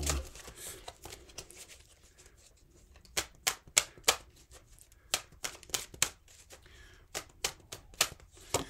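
Tarot cards being shuffled and handled, a series of sharp irregular clicks and snaps starting about three seconds in after a faint rustle.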